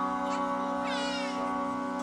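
Steady instrumental drone from a harmonium's held reeds and a tanpura's plucked strings. About a second in, a brief buzzing swirl of high overtones glides by, the kind the tanpura's bridge gives its strings.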